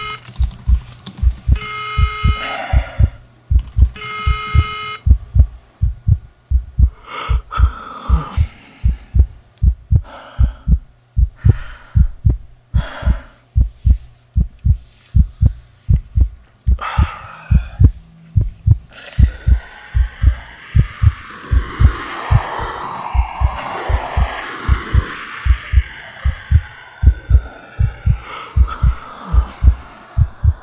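A steady run of deep, low thumps like a heartbeat, about two a second. Near the start three electronic tones sound about two seconds apart, and about two-thirds of the way through a rushing noise swells and then fades.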